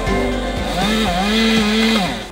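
Chainsaw cutting through a limb, its engine pitch climbing early on and then holding steady under load, with background music over it.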